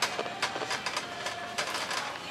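Wire shopping cart rattling as it is pushed, its wheels and metal basket giving a run of irregular clicks and clatters. A faint steady tone runs underneath.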